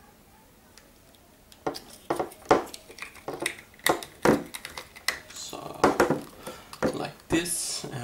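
Irregular sharp plastic clicks and knocks as a small plastic cable-switch housing is handled and its cover pressed back on over the wired PCB, starting about a second and a half in.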